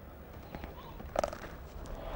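A cricket bat striking the ball with one sharp crack a little past a second in, over faint crowd background.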